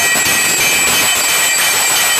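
Aarti din of temple bells ringing continuously, a loud dense clangour with steady high ringing tones and repeated strikes.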